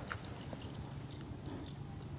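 Quiet outdoor background: a low steady rumble with a few faint scattered ticks.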